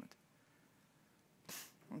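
Near silence of room tone, then about one and a half seconds in a short, sharp breath noise, a quick intake of breath just before a man's voice resumes at the end.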